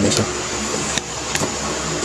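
Three light clicks, about 0.1, 1 and 1.35 seconds in, from multimeter test probes being handled against an opened plastic inline fan switch, over a steady background hiss.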